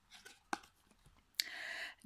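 Small cardboard board book being handled and opened: a light click about half a second in, then another click followed by a brief scrape of card rubbing against card near the end.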